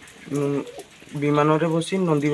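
A boy's voice speaking in long, drawn-out, sing-song phrases, twice, with a short pause between.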